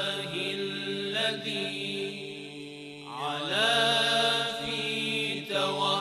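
Interlude music of chanted vocals over held low notes. A little after three seconds in, the voice slides upward and swells louder for about two seconds.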